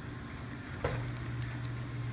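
Quiet dining-room background with a low steady hum that comes in about a second in, and a single short knock at the same moment.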